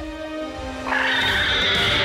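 Cartoon Tyrannosaurus (sharptooth) giving a loud, high, wavering roar that starts about a second in, over background music.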